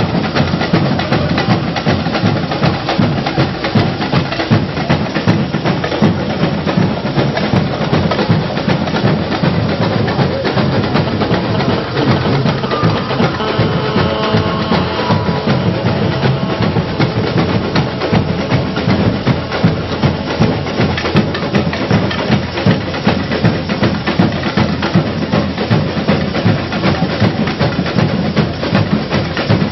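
Samba school bateria playing a dense, steady samba rhythm on drums and percussion.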